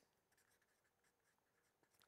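Near silence, with only the very faint scratching of a felt-tip marker writing on paper.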